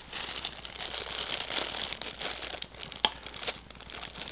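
Toy packaging crinkling and rustling as it is handled, with a few small clicks.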